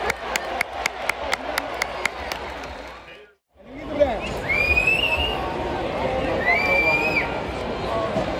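Football stadium crowd cheering, with close hand claps about four a second for the first three seconds as the noise dies down. After a sudden break, steady crowd chatter with two high held calls rising above it.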